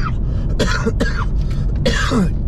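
A man coughing and clearing his throat, a few short rough coughs, over the steady low road rumble inside a moving car's cabin.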